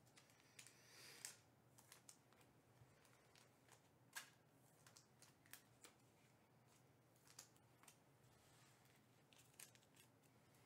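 Near silence with faint scattered clicks and a brief rustle about a second in: trading cards and pack wrappers being handled quietly off-microphone.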